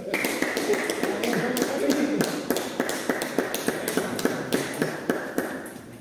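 Table tennis balls clicking off bats and tables in quick, overlapping taps from rallies at several tables, over a steady background hum of the hall.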